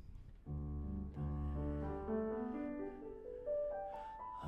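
Grand piano playing a passage in a major key, starting about half a second in: held low chords under a moving upper line that climbs near the end.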